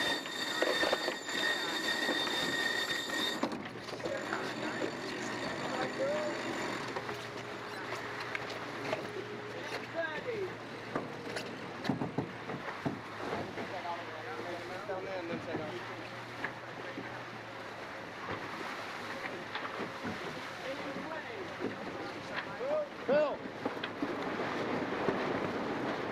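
On-board sound of a GC32 foiling catamaran sailing: a steady rush of wind and water, with the crew calling out to one another now and then. A steady high tone sounds for the first three seconds or so.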